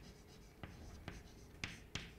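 Chalk writing on a blackboard: faint scratching as letters are written by hand, with a few sharper clicks of the chalk striking the board, one about a third of the way in and two close together near the end.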